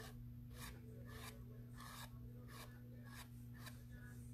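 Palette knife dragging white chalk paint across a canvas: faint scraping rubs in short repeated strokes, about one and a half a second.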